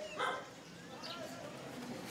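A dog barks once, briefly, about a quarter second in, over faint background voices.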